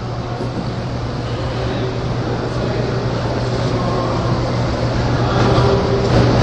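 A steady low mechanical rumble with a droning hum, slowly growing louder.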